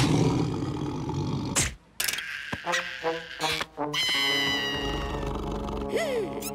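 A cartoon character's angry growl, loud and rough, lasting about a second and a half, followed by cartoon music with short repeated notes and then a held chord.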